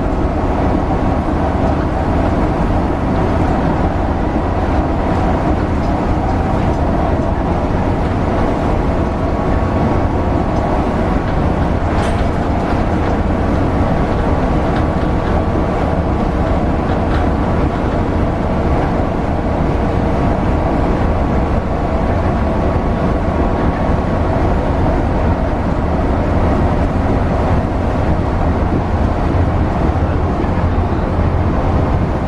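Cabin noise of a Mercedes-Benz O405NH diesel bus cruising on the O-Bahn's concrete guide track: a steady engine drone with tyre and track rumble. A single sharp click comes about twelve seconds in.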